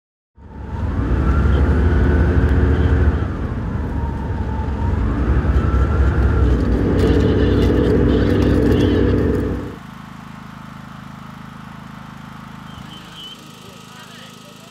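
Engine and running noise heard from inside a vehicle moving across the ice, with a whine that rises and falls in pitch. About ten seconds in it cuts to a much quieter steady hum.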